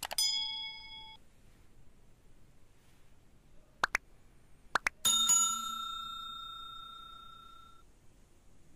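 Like-and-subscribe animation sound effects: a click with a short ding at the start, two pairs of mouse clicks about four and five seconds in, then a notification bell ringing out and fading over about three seconds.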